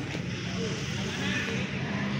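A steady low mechanical hum, like an engine running, with faint distant voices calling briefly over it.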